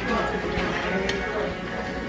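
Indistinct background voices with soft music, and a few light clicks as metal orthodontic instruments work on the braces.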